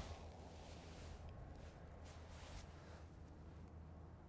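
Near silence: faint outdoor background with a low steady rumble.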